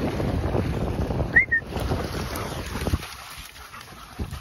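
Several dogs splashing as they run through shallow water, with wind buffeting the microphone. A short high chirp comes about a second and a half in, and the splashing dies down near the end.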